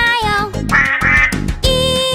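Children's song music with cartoon duck quacks, a short run of quacks about a second in, over the melody.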